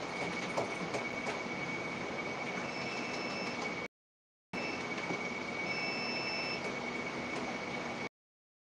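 Steady noise with a constant high whine. It cuts out to dead silence for about half a second near the middle, and two short higher tones sound a little before and after the gap.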